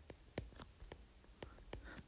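A stylus tapping on an iPad's glass screen as dots and short strokes are drawn: several faint, sharp taps at irregular intervals.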